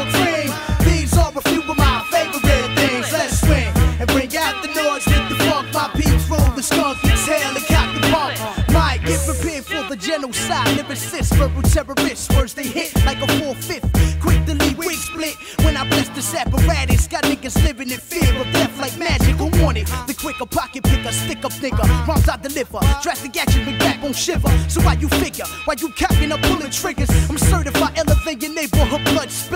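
A 1990s-style hip-hop track playing: a steady beat with heavy kick drum and bass, with rapped vocals over it.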